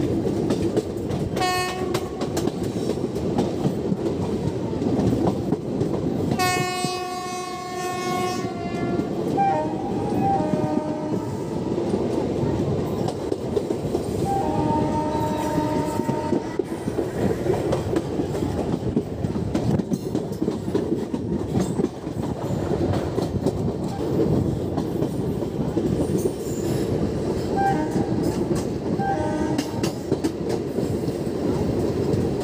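A passenger train running along the track, heard from the side of a coach, with steady wheel-on-rail noise and clatter throughout. A horn blast of about two and a half seconds comes about six seconds in. Shorter, fainter horn tones sound a few more times later.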